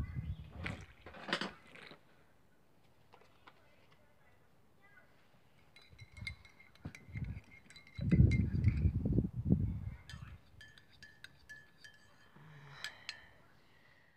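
A teaspoon stirring coffee in a ceramic mug, clinking quickly and repeatedly against the inside of the mug, with a faint ringing tone, for several seconds in the second half. Midway a louder, low rumble of handling noise comes in.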